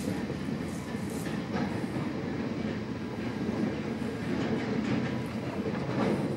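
Container freight train wagons rolling past, a steady noise of steel wheels on the rails.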